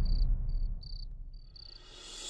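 Crickets chirping in short, high trills, about five in the first second and a half, then stopping, over a low rumble that fades away.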